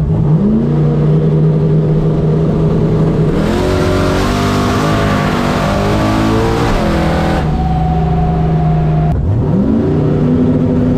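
Turbocharged drag car engine heard from inside the cabin. It holds a steady rev, then about three seconds in it goes hard on the throttle, the revs climbing in several steps through the gears for about four seconds before settling to a steady drone. Near the end the sound breaks off into another rising rev.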